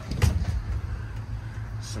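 A single sharp knock from the pickup's in-bed trunk being handled, about a quarter second in, over a steady low hum.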